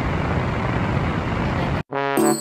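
Steady rumble and hiss of a vehicle heard from inside a minivan's cabin, cutting off suddenly near the end.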